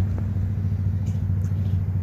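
Steady low rumble of an idling vehicle engine, unbroken throughout.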